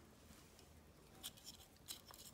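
Faint clicks of a metal pin terminal being pushed into a plastic ECU harness connector, with a small snap just before the end as the terminal locks into its cavity.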